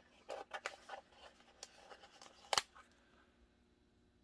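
Hands handling a paper sticker sheet: a few soft rustles and taps in the first second, then one sharp click about two and a half seconds in.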